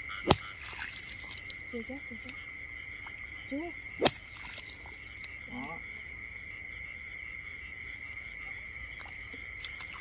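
Night chorus of frogs and insects in a flooded rice field: a steady high-pitched trill, with a few short, faint rising calls. Two sharp clicks stand out, one just after the start and one about four seconds in.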